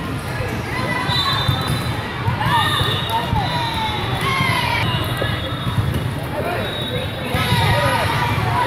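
Busy indoor volleyball hall: athletic shoes squeaking on the sport-tile court in short rising and falling chirps, with volleyball hits and a steady background of crowd voices echoing in the large room.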